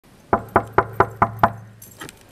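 Six quick, evenly spaced knocks on an apartment front door, about four or five a second, starting a moment in and stopping about halfway.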